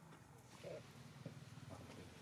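Near silence, with one brief, faint macaque call a little under a second in.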